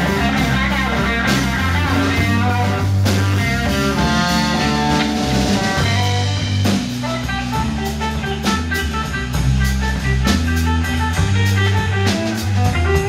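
Live slow blues played by electric guitar, electric bass and drum kit, with the guitar carrying the lead and no singing.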